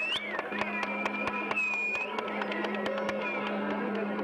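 Okinawan folk music with a plucked sanshin and a high held melody line, over a steady electrical hum from an old film soundtrack.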